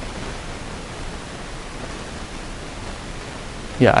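Steady, even background hiss of room tone, with a man's voice saying "yeah" near the end.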